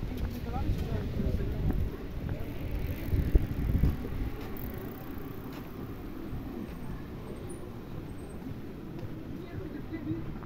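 Outdoor pedestrian-street ambience: voices of people walking past, over a low rumble of wind and handling noise on a hand-held microphone, with a brief thump about three seconds in.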